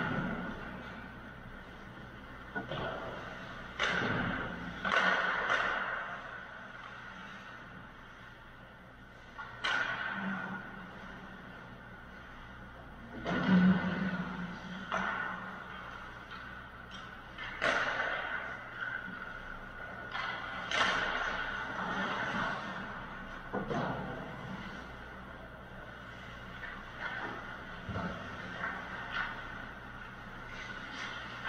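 Distant ice hockey play in an echoing indoor rink: sharp cracks of sticks striking pucks and pucks hitting the boards, about a dozen spread irregularly through the stretch, each ringing out in the hall. A steady hum runs underneath.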